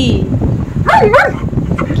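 German Shepherd dog vocalising in short whining, yipping calls that bend up and down in pitch, two quick ones about a second in.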